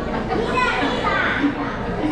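Background chatter of voices, with children's voices standing out.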